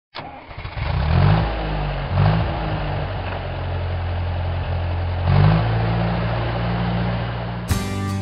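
Tractor engine starting up and revving three times, its pitch rising sharply and falling back each time, then running on. Just before the end it cuts suddenly to acoustic guitar music.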